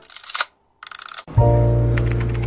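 A camera shutter sound effect: two short clicking bursts a little under a second apart. About a second and a half in, background music starts with a steady low bass and held notes.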